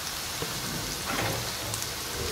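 Chicken pieces, peas and green pepper sizzling steadily in a frying pan.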